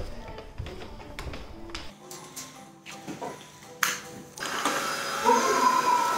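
Background music, then about four seconds in a cordless stick vacuum cleaner starts running with a steady whine.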